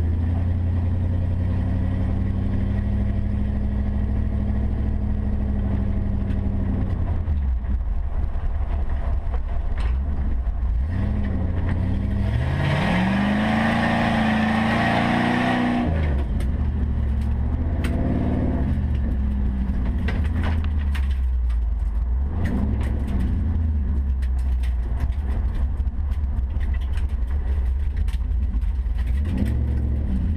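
The Jeep Cherokee XJ's 4.8-litre LS V8 heard from inside the cabin while driving. About twelve seconds in it accelerates hard, its pitch rising, and it drops off suddenly around four seconds later. The rest is steady driving with small rises and falls in revs.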